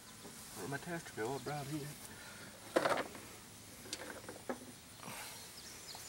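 Quiet outdoor background with a few brief sharp clicks from hands handling wires and parts on a small engine. The strongest click comes about three seconds in.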